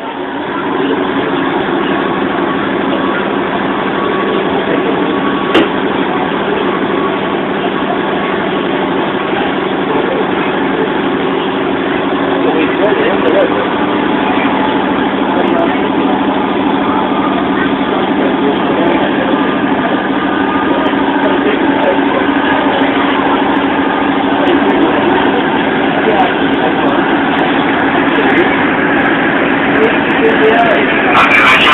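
Inside a passenger train carriage on the move: a steady hum from the train's running gear under continuous background chatter of passengers, children among them, with a single short click about five seconds in.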